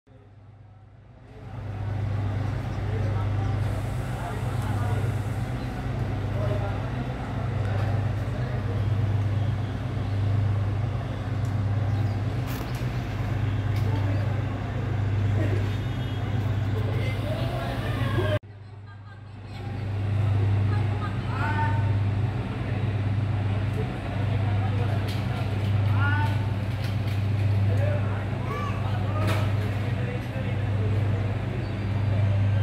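Engine running steadily with a low hum that swells and fades about once a second, with faint voices over it. The sound starts about a second and a half in, breaks off briefly about halfway through and then picks up again.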